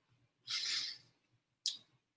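Mouth and breath sounds of a man eating: a half-second breath out through the nose about half a second in, then a brief click from the mouth near the end.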